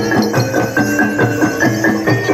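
Live folk music of struck, ringing pitched percussion, played in a steady pattern of about four strokes a second.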